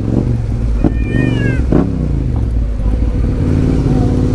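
Yamaha Ténéré 700's parallel-twin engine running steadily at low speed. About a second in there is a brief high-pitched cry that falls in pitch.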